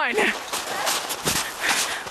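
Running footsteps in snow, a few uneven steps.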